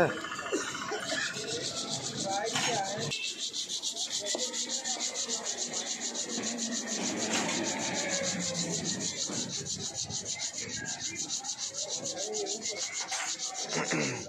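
Royal Enfield rear disc brake pad rubbed back and forth on sandpaper in quick, even strokes, several a second: the pad's glazed, dirt-stained friction face is being ground down to cure its squeal.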